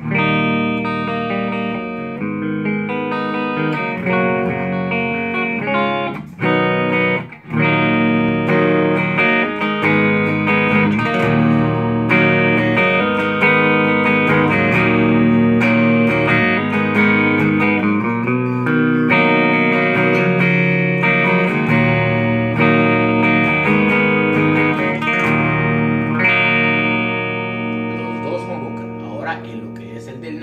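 Custom electric guitar with humbucker pickups played through a Mesa/Boogie combo amp, tried out for its tone: ringing chords and single-note lines. There are two brief breaks about six and seven seconds in, and the playing tapers off near the end.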